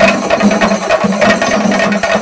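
A chenda melam ensemble of Kerala chenda drums played with sticks: fast, dense strokes over a steady, even beat.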